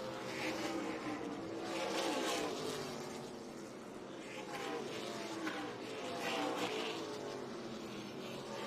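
Several NASCAR stock cars' V8 engines racing around a short oval, the engine pitch rising and falling as cars pass and accelerate through the turns. It swells loudest about two seconds in and again near the end.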